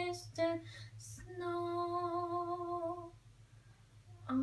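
A young girl singing unaccompanied. One note ends and a short note follows, then she holds one long, steady note for about a second and a half, stopping about three seconds in. A steady low hum runs underneath.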